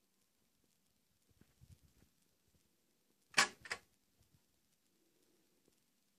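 Motorcycle gearbox shifted from second into third with the engine off: two sharp clacks about a third of a second apart, a little past the middle, after a few faint knocks.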